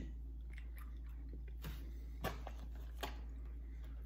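Faint chewing of a soft-baked cereal bar, with a few soft clicks of the mouth, over a steady low hum.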